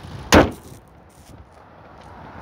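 A car hood slammed shut once: a single sharp bang about a third of a second in. A low steady engine hum, the 2.0-litre four-cylinder idling, runs beneath and is quieter once the hood is down.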